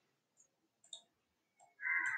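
Near silence with a single faint click about a second in, then a short, harsher noisy sound starting near the end.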